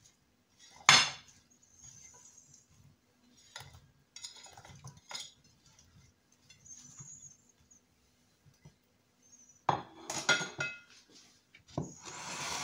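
Raw potato slices being laid by hand into a glass baking dish, with soft scattered taps and a sharp clink about a second in. A louder clatter of the glass dish comes near the end.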